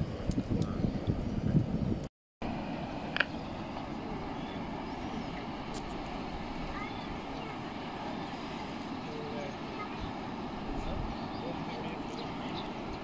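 Outdoor ambience at a riverside: gusty low rumbling for the first two seconds, a brief dropout, then a steady, even noise.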